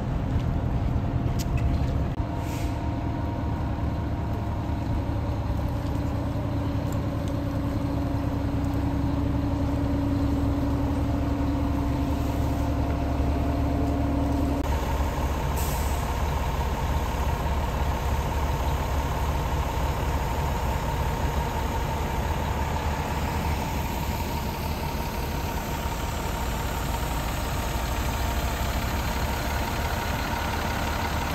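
Fire engine's diesel engine idling: a steady low rumble with a faint hum on top. The hum's pitch changes abruptly about halfway through.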